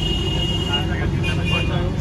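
Busy street noise: a steady traffic rumble under background voices, with a thin steady high tone that stops about halfway through.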